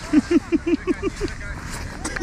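A person laughing in a quick run of about seven short, falling 'ha'-like syllables in just over a second, then trailing off.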